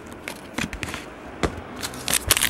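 Trading cards being handled and flicked through by hand: a few separate light clicks and taps of card stock, over a faint low steady hum.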